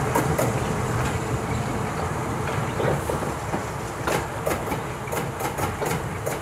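Old electric box motor's steel wheels rolling slowly on jointed track as it is moved unpowered: a steady low rumble with sharp clicks over the rail joints, coming more often in the second half.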